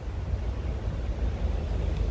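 Wind buffeting the camera's microphone: a low, uneven rumble that swells and dips, under a faint hiss.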